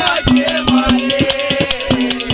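Haryanvi ragni folk music: harmonium playing a melody over a steady held note, with fast, regular hand-drum beats.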